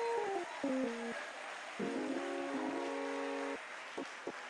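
Church keyboard playing sustained chords: a held note stepping down in pitch in the first second, then a fuller chord held for about a second and a half, over the noise of the congregation.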